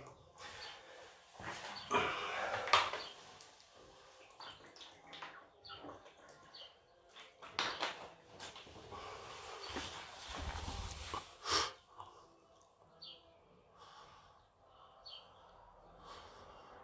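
A person moving about and handling things off to the side: scattered clicks, knocks and rustles, with a few sharper knocks around eight and eleven seconds in and a low thud just before the last of them.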